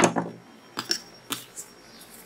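Scissors snipping off yarn tails with a sharp click at the start, followed by two fainter light clicks.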